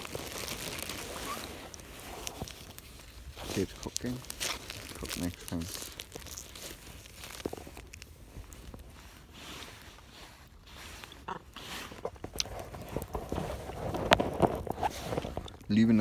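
Close-up eating and handling sounds of a cheese string being eaten: scattered small clicks, rustles and chewing, with a few brief murmurs about four seconds in.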